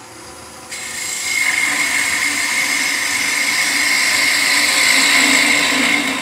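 Woodturning gouge cutting a small wood blank spinning on a lathe, shaping a spinning top. The cut starts about a second in and runs steadily.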